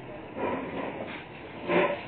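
A person's voice: two brief, indistinct sounds, the second and louder one near the end, over a steady room background.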